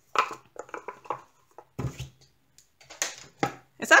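Handling noise from a hard-shell glasses case being turned over in the hands: a scatter of small clicks, knocks and rustles, with one heavier thump about two seconds in.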